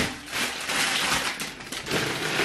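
Plastic food packaging rustling and crinkling as grocery items are handled and set down.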